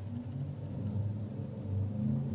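A low, steady hum, with faint tones wavering just above it.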